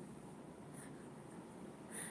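Quiet room tone with a faint scratchy rustle, like light handling of a phone or fabric.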